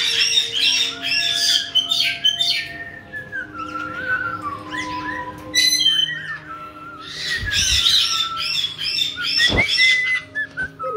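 Caique parrots chattering and squawking. There are bursts of fast, high, repeated notes in the first couple of seconds and again about eight seconds in, with sliding whistled notes in between.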